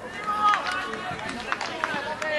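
Raised voices shouting across a football pitch, short calls overlapping, loudest about half a second in.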